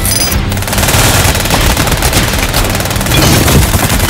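Rapid, sustained automatic gunfire, starting about half a second in, with dramatic trailer music underneath.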